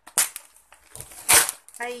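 Plastic diaper packaging being cut and ripped open with scissors: two sharp crackling rips about a second apart, the second louder.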